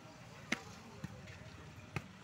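A volleyball being struck by players' hands during a rally: three sharp smacks, about half a second in, about a second in, and near the end, the first loudest and the middle one faint.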